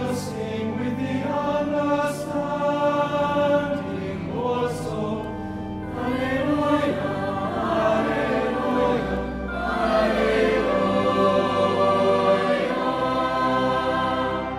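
Mixed chamber choir singing with organ accompaniment, the voices ringing in a reverberant cathedral. The phrases ease off about five seconds in and then swell again, and the sound falls away near the end.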